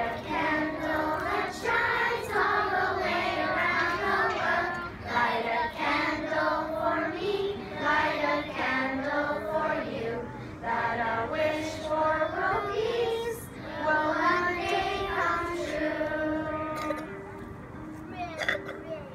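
A large group of children singing a song together, holding long notes.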